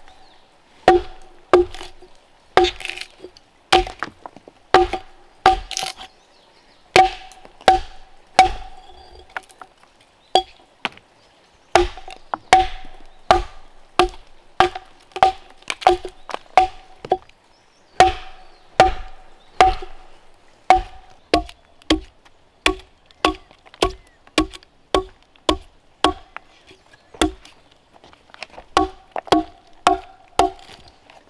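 Axe chopping into a wooden log, scoring and hewing it flat: a steady run of sharp strikes, each with a brief ringing note, about one to two a second. There is a short pause about ten seconds in, and the blows come quicker in the second half.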